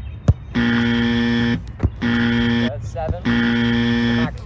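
A buzzer sounds three times, each blast steady in pitch and cutting on and off abruptly: about a second long, then a shorter one, then another second-long blast. A sharp knock comes just before the first blast, and another falls between the first two.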